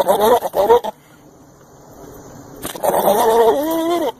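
Goat bleating loudly twice: a short, wavering call at the start, then a longer call from just under three seconds in.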